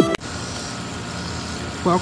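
Electronic intro music ends with a downward pitch sweep and cuts off suddenly just after the start, leaving a steady low background hum. A voice begins speaking near the end.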